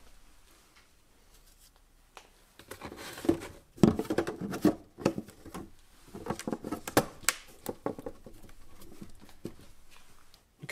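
Plastic clattering, clicking and knocking as 3D-printed trays are set down in a plywood drawer and snapped together at their dovetailed bases, starting about two and a half seconds in, with a run of sharp knocks around the middle.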